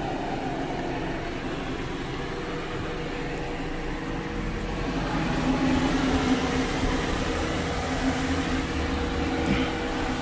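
A car's engine running and its tyres rolling at low speed, heard from inside the cabin as the car pulls forward; a steady hum that grows a little louder about halfway through.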